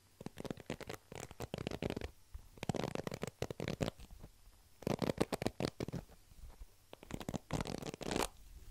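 Stiff bristles of a hairbrush scrubbed back and forth over a foam microphone windscreen, close-up. The scratching comes in four bursts of about a second each, with short pauses between.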